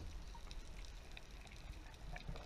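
Faint underwater water noise heard through a camera housing: a low rumble of water moving past, with a few faint ticks.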